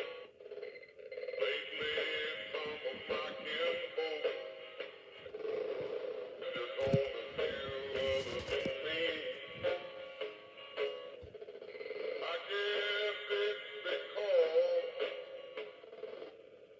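Animated singing cowboy figure playing a song with a male singing voice through its small, tinny speaker, with the pitch wavering, while running on low batteries instead of its adapter.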